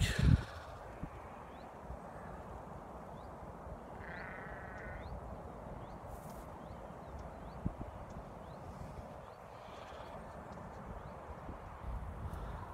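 Breeze buffeting the microphone as a steady low rumble. About four seconds in comes a bleating animal call of about a second, and faint short high chirps sound now and then.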